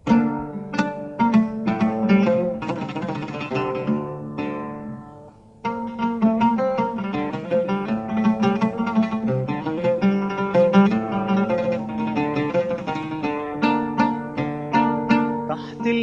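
Solo oud playing the instrumental opening of a Tunisian waltz: a run of plucked notes that dies away about five seconds in, then starts again and carries on.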